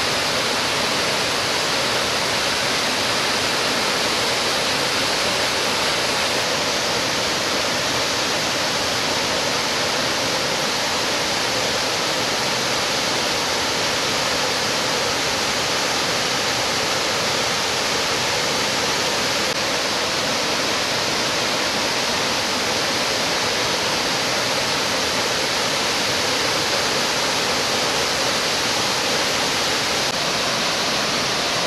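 The Yukankoski (White Bridges) waterfall, a tall cascade pouring over stepped rock ledges, with a steady, unbroken rush of falling water.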